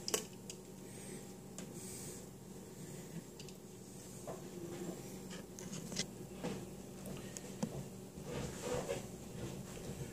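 Faint scattered clicks and rubbing of a Corsair H60 liquid cooler's pump block and rubber hoses being handled and set down onto the CPU, with a few sharper clicks near the start and about six seconds in.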